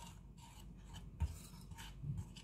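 Wire whisk stirring flour into thin kefir batter in a ceramic bowl: faint, repeated scraping and swishing strokes as the lumps are beaten out, with one slightly louder tap about a second in.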